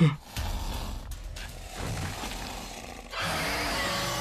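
Film sound design: a low, quiet rumble, then about three seconds in a steady, louder hiss from the giant python as it rears with its mouth open.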